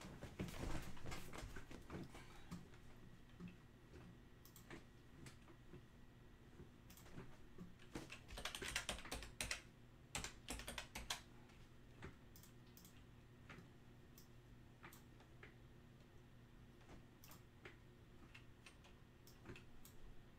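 Faint computer keyboard typing and single clicks, with a short burst of keystrokes about halfway through and scattered isolated clicks otherwise.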